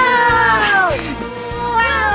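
Music with a high voice holding two long notes that each slide downward, the first over about the first second and the second starting near the end.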